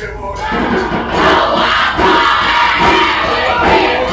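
Cook Islands dance group chanting and shouting loudly in unison, many voices together.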